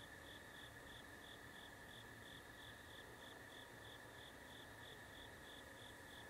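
Faint crickets chirping at night: one steady high trill with a higher chirp pulsing about three times a second.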